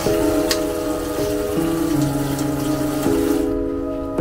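Kitchen tap running into a stainless-steel sink, shut off about three seconds in. Background music of slow held chords plays throughout.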